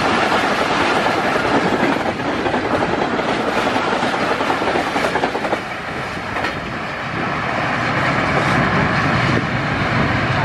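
Pakistan Railways passenger coaches passing close at speed, wheels running over the rails with a loud, dense rushing noise. The sound drops about halfway through as the last coach goes by, then a rushing noise builds again towards the end.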